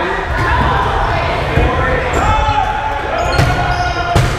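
Dodgeballs bouncing and striking the gym floor and walls, with a few sharp thuds, over players' shouts and chatter echoing in a gymnasium.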